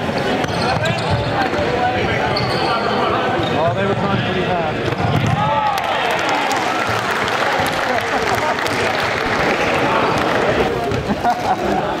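Sports shoes squeaking on a wooden gym floor during play, amid players' shouts and spectators' chatter, with the crowd noise swelling around the middle.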